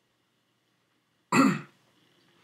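Near silence, then a person coughs once, a single short burst past the middle.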